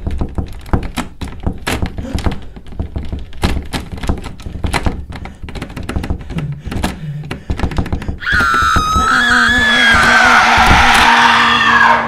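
Rapid, irregular knocking and thudding on a car's door and body, several blows a second. About eight seconds in it gives way to a man's loud, wavering scream over a low, steady music drone.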